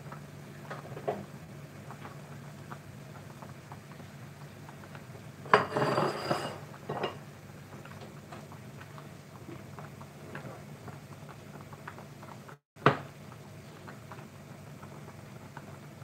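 Kitchenware clattering on a gas hob: a burst of pot and utensil knocks with a little metallic ringing about five and a half seconds in, and one sharp knock near the end, over a low steady hum and scattered light clicks.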